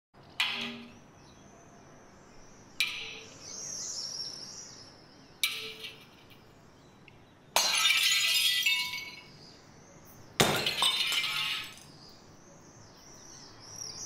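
Hammer striking and breaking glass: five sharp blows a few seconds apart, the last two shattering with a clatter of falling pieces lasting over a second. Birds chirp in between.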